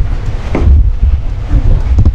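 Low rumbling thumps of a handheld microphone being handled, with a click at the start and faint snatches of voice.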